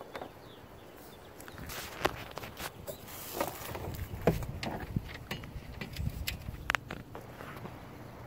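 Footsteps and handling noise: a string of irregular light knocks and scuffs with a low rumble as the person walks with the camera, plus one brief high tone near the end.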